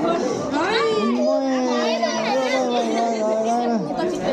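Toddler crying in one long, drawn-out wail that stops just before the end, with other voices around it.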